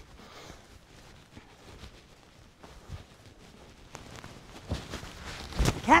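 Hoofbeats of a horse moving over the soft sand footing of an indoor arena, soft scattered knocks that grow busier toward the end, with a louder thump near the end.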